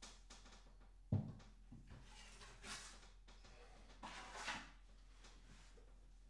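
Faint scraping of a metal filling knife working filler into a gap at the ceiling, with a soft knock about a second in and two lighter ones later.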